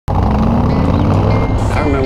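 Car engine running with a loud, deep rumble as the car drives, mixed with music.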